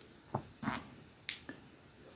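Four soft, short clicks within the first second and a half, the first the loudest.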